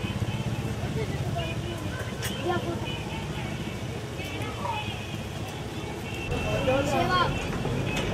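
A motor running with a steady low rumble, with indistinct voices over it; the rumble gets louder about six seconds in.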